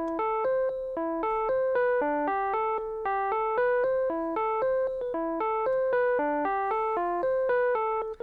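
Logic Pro's Classic Electric Piano instrument playing a single-note melody of about four notes a second. The notes are MIDI converted by Flex Pitch from a synth-lead audio recording.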